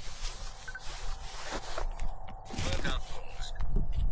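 Wind buffeting the microphone and trail noise from an electric mountain bike on the move, a steady low rumble under an uneven hiss with scattered clicks. A short voice-like call cuts in about two and a half seconds in.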